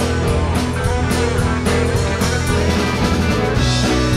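Live rock band playing an instrumental passage: electric guitar holding and bending notes over bass and drums.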